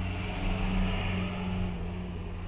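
Steady low hum and hiss of a running computer fan, swelling a little from about half a second in.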